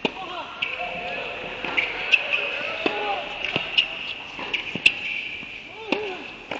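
Tennis balls being struck by rackets and bouncing on an indoor hard court during a doubles rally: a string of sharp, echoing pops at uneven intervals, over a steady high-pitched hum in the hall.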